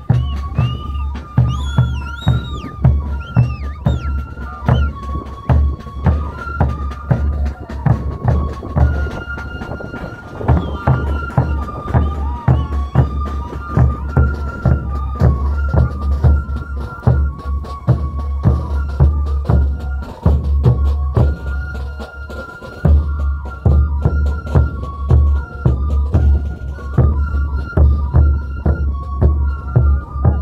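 Traditional Andean festival music: a flute-like melody of held notes over a steady bass drum beat, about two beats a second.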